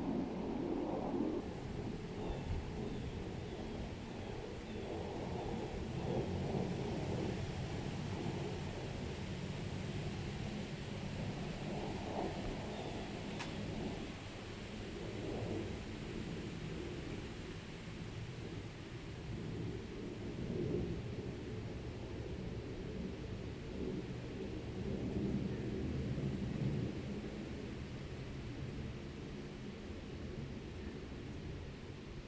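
Low rumble of wind on the microphone, swelling and easing every few seconds. A faint run of short high chirps comes about two seconds in, and a single sharp click falls near the middle.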